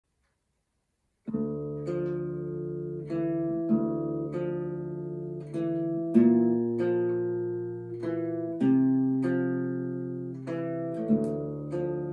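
Cort acoustic guitar being played, starting about a second in: chords struck and left to ring, with a new chord about every two and a half seconds.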